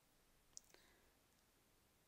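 Near silence, with a faint computer keyboard click about half a second in and a couple of fainter key ticks just after, as digits are typed.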